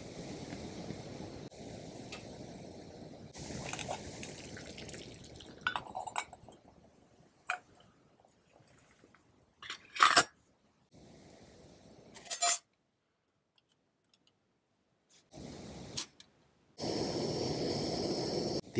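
Handling of a stainless steel folding stove and its parts: scattered metal clicks and scrapes, the sharpest about ten seconds in, broken by silent gaps. Near the end comes a steady hiss from a lit gas burner.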